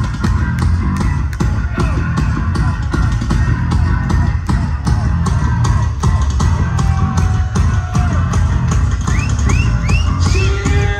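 Live hard rock band playing at full volume: distorted electric guitars over a steady, driving drum beat.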